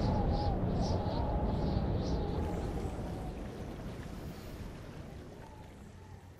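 A rushing-noise sound effect from an anime soundtrack, like surging wind and water. It is loudest at the start and fades steadily away.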